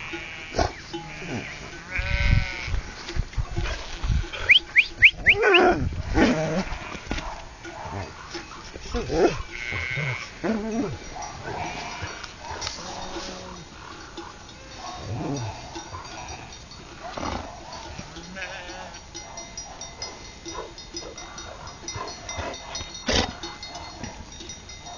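A large flock of sheep bleating, many calls of different pitches overlapping, thickest and loudest in the first several seconds.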